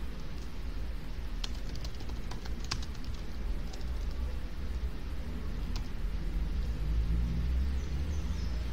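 Computer keyboard typing: a few scattered keystroke clicks over a steady low hum.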